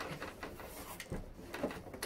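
A cardboard box and its packaging being handled: a few soft taps and light rustles, scattered and faint.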